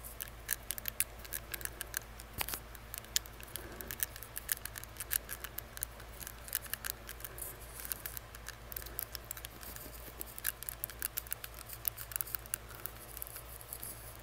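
Close, rapid clicking of a metal tongue ring against the teeth behind a face mask, in irregular quick clusters.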